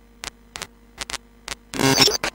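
Circuit-bent Texas Instruments Speak & Spell (French 'Dictée Magique') sputtering out a few short glitchy clicks over a steady electrical hum, then a longer buzzy pitched tone near the end.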